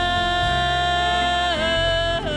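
Live folk-rock band: a woman's voice holds one long sung note over acoustic guitar, electric bass, drums and keyboard. The note slides to a new pitch about one and a half seconds in.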